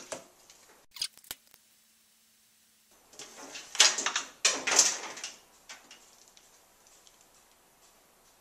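Two sharp clicks of a USB-C phone charger being pushed into a wall outlet, then a loud rustle and clatter of power cords being pulled and handled, with a few small clicks after.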